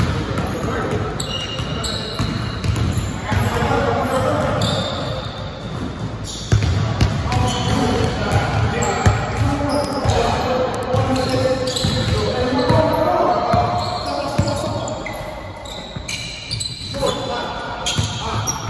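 Basketball being dribbled on a hardwood gym floor, with repeated ball bounces, short high sneaker squeaks and players' voices calling out, echoing in a large gym.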